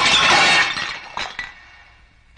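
A metal serving tray and steel tumblers crash onto a hard floor and clatter, ringing as they settle. The crash is loud for the first half second, then dies away, with a couple of small clinks around a second in.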